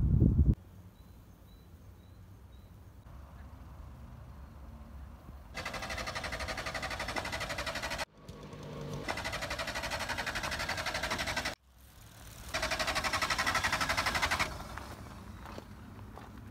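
Small motor scooter engine running with a steady, fast-pulsing note, heard in three stretches of a few seconds each that start and stop abruptly, after a quiet stretch of outdoor background.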